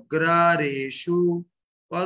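A man chanting a Sanskrit verse in a slow, sing-song recitation, holding each note steady, with a short break between phrases near the end.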